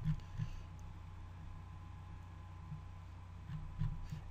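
Quiet room tone in a pause between spoken words: a steady low hum and faint background hiss, with no other sound.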